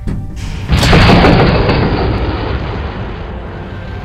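Sudden loud rocket blast about three-quarters of a second in: a rush of noise over a low rumble that slowly dies away. It is the lunar module's ascent engine firing as the ascent stage separates and lifts off, set off by pressing the Abort Stage button.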